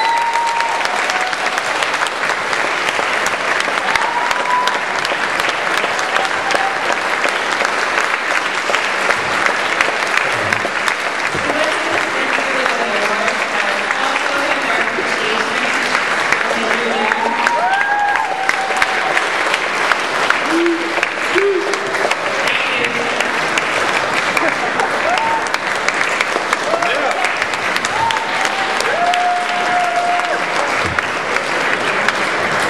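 Banquet audience applauding steadily and at length, with a few short calls and voices rising above the clapping.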